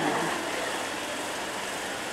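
Steady background noise of a crowded venue, with faint voices early on.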